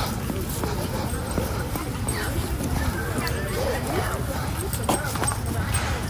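Walking with a handheld phone: a steady rumble of wind and handling on the microphone, with footsteps on the pavement and faint voices in the background.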